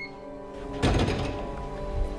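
Vault door opening with a single thunk about a second in, over background music; a short electronic keypad beep right at the start.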